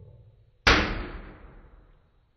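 Exploding-wire demonstration: a capacitor charged to six kilovolts discharges through a very thin wire, which explodes with one sharp bang about two-thirds of a second in, dying away over about a second.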